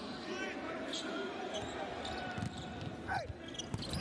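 A basketball being dribbled on the court, a run of short bounces in the second half, with sneaker squeaks and murmuring voices in the arena.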